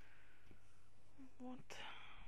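Faint room tone with a low steady hum; about a second and a half in, a brief, breathy vocal sound from the narrator, too short to form words.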